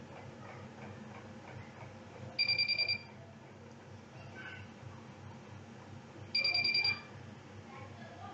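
Two short bursts of rapid electronic beeping, each about half a second long and about four seconds apart, over a low background hiss.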